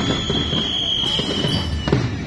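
Marching band drums beating irregularly, not in a steady rhythm, with sharp loud strikes at the start and just before the end. A steady high-pitched tone is held over them and stops just before the end.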